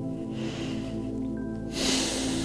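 Slow ambient music of sustained tones, with a faint breath about half a second in and a loud breath through the nose close to a clip-on microphone near the end, lasting about a second.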